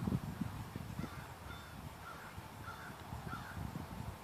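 A bird calling about five times in short, harsh calls, roughly every half second, over a low rumble.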